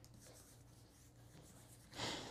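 Faint rubbing of hands smoothing a sheet of cardstock onto a sticky cutting mat, barely above silence.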